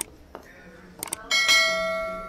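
A bell-like chime rings out about a second and a half in, struck twice in quick succession, its bright overtones fading slowly.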